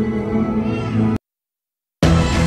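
Background music with sustained low notes that cuts off abruptly a little over a second in, followed by dead silence.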